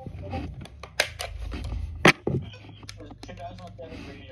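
Handling noise and clicks from a weather radio's battery compartment as a 9-volt battery is fitted, with two sharp clicks about one and two seconds in.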